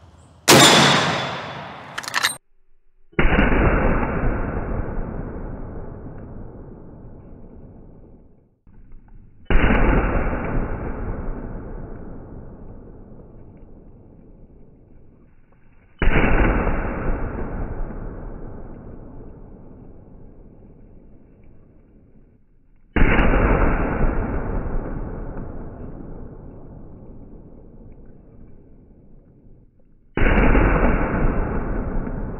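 Marlin 1895 lever-action rifle in .45-70 fired five times. The first shot is a sharp, close crack about half a second in, followed by a click about two seconds in. The next four are heard from far off, about every six and a half seconds, each a duller boom that rolls away over several seconds.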